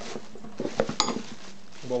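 Plastic bag crinkling and rustling, with a few sharp clicks and knocks about halfway through, as an angle grinder is lifted out of its packaging box.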